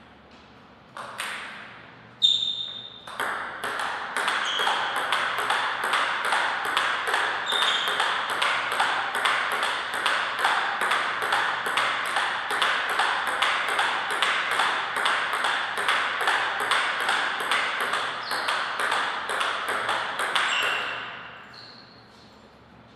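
Table tennis ball ticking off the paddles and the table in a steady back-and-forth rally, about two to three hits a second, with a steady hiss underneath. A couple of single bounces come first, and the rally stops a little before the end.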